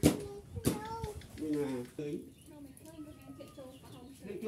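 Goats bleating: a series of short, wavering calls, with two sharp knocks in the first second.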